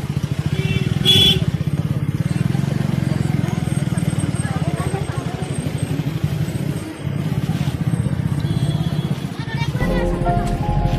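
A small engine running steadily close by, with a fast even pulse, under the voices of people talking in the background. A brief high-pitched sound cuts in about a second in.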